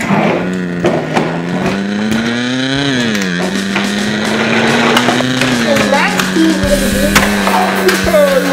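A child's voice making a long engine noise for a toy monster truck, rising in pitch for about three seconds, dropping sharply, then holding steady.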